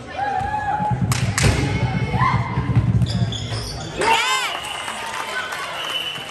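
Basketball game sounds in a gym: two sharp bounces of the ball on the hardwood floor about a second in, under the low rumble and chatter of spectators. About four seconds in, a quick run of high squeaks from sneakers on the court.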